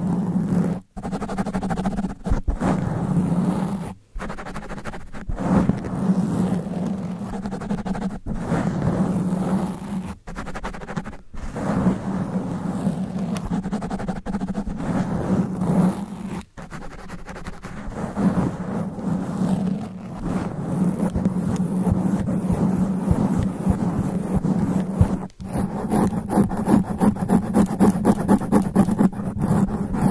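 Long fingernails scratching fast and hard on a microphone's foam sponge cover, a dense rough scratching with a deep rumble, broken by a few brief pauses. Near the end the strokes turn quick and rhythmic, about five a second.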